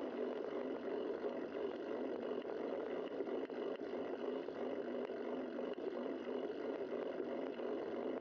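Steady rush of wind and road noise on a bicycle-mounted camera as the bike rolls along.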